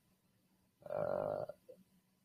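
A man's short creaky, buzzing vocal sound, like a throat hum, lasting about half a second, about a second in.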